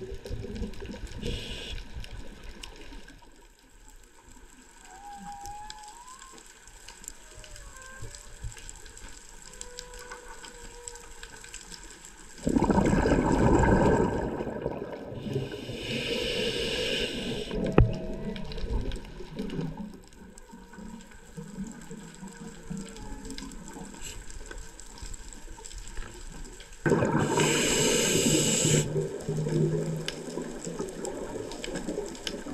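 A scuba diver breathing through a regulator underwater. A loud rush of exhaled bubbles comes about twelve seconds in and is followed by the hiss of an inhale. A second long breath comes near the end, with faint wavering tones in the quiet stretch before the breaths.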